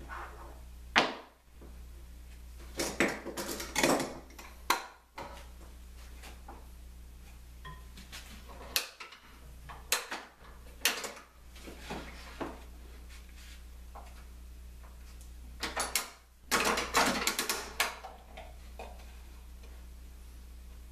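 Wooden blocks, a plywood workpiece and rapid-action clamps being handled and set on a work table: scattered knocks, clicks and short clatters, busiest about three to five seconds in and again near sixteen to eighteen seconds, over a steady low hum.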